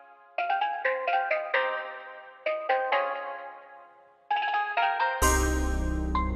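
Background music: a bright, bell-like melody played in short phrases of quick notes that ring away, with a bass line and fuller backing coming in about five seconds in.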